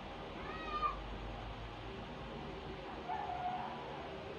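Kitten mewing twice: a short, higher mew about half a second in and a lower one about three seconds in, over a steady faint hiss.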